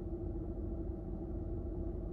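Steady low hum of a car, heard inside its cabin, with a faint steady tone over it.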